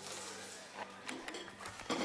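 Handheld camera being moved and gripped: rubbing against the microphone with several small irregular clicks.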